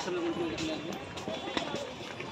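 Footsteps of a group of people walking on a paved path, with voices of people talking nearby, one voice clearest in the first part.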